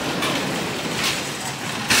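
Steady rumbling noise of a busy supermarket entrance, with faint background voices.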